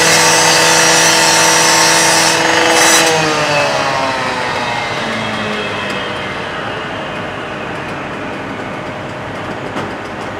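Rotary cutoff saw running at full speed as its blade cuts through a metal garage door, then let off about three seconds in, its pitch falling steadily as it winds down.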